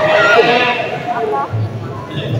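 A high-pitched voice, shrill speech or squealing laughter, rising and falling in pitch over the murmur of other voices, with the echo of a large hall.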